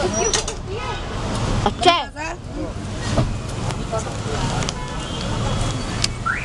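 Busy street ambience: a steady traffic rumble with scattered voices of people nearby. The loudest moment is a brief, loud, wavering voice about two seconds in.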